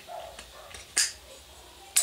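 Two short, sharp clicks about a second apart, the second near the end, as a Celeron (phenolic laminate) handle scale is pressed down and seated onto a knife's steel tang.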